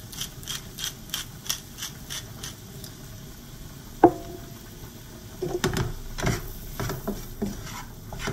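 A wooden pepper mill being twisted, grinding with a steady ratcheting click about three times a second for the first three seconds. About four seconds in there is a single sharp knock that rings briefly. Near the end a spatula scrapes and knocks as sliced mushrooms are stirred in a nonstick frying pan.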